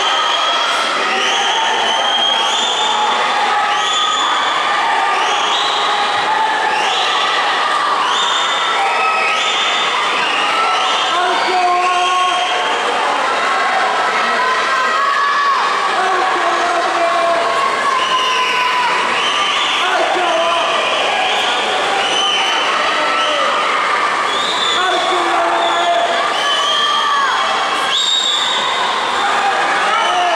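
Spectators at a swimming race cheering and shouting, with rhythmic shouts about once a second through the first half, then a looser mix of calls and voices.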